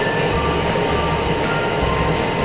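Timer of a Splash Out water-balloon ball running steadily as it counts down toward releasing the balloon, with regular low pulses.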